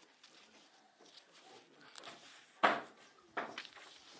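Pages of a book being turned and handled: faint rustling, then a sharp loud rustle about two and a half seconds in and a smaller one shortly after.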